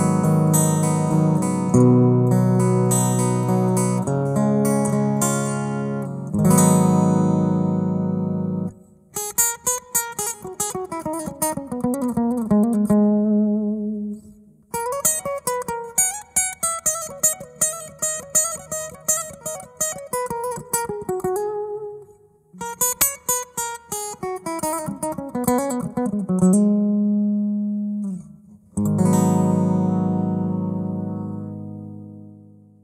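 Electric guitar played through the Valeton GP-100's AC Sim 3 acoustic guitar simulator, dry with no post-processing. Ringing strummed chords open the passage, followed by quick picked single-note runs that fall in pitch, with short breaks between them, and strummed chords return near the end.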